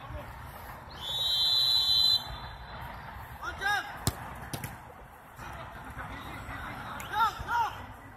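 A referee's whistle blows a single steady high blast of just over a second, starting about a second in. About four seconds in there is a sharp thud as a free kick is struck, and short shouts come just before the kick and again near the end.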